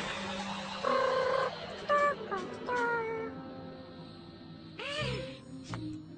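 A whoosh, then a Vegimal's squeaky, meow-like cartoon chatter: several short high calls, one falling in pitch, and a rising-and-falling call near the end, over background music.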